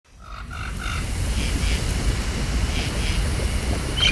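A low, steady rumble that fades in over the first half second. Three short high calls come in quick succession in the first second, and a few fainter ones follow later.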